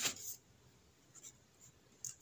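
Marker pen scratching on paper in a short stroke that stops about a third of a second in, followed by near silence with a few faint ticks.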